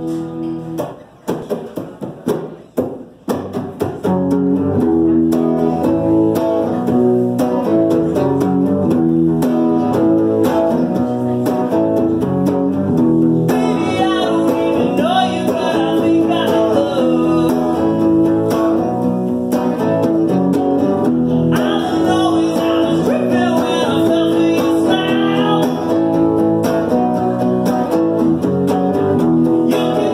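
A man playing an f-hole archtop guitar and singing. A few loose strums in the first seconds give way to steady strumming about four seconds in, and his voice comes in about halfway through, with a short break in the singing.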